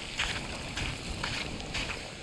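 Footsteps on coarse beach sand littered with shell and coral bits, about two steps a second, over a low rumble of wind on the microphone.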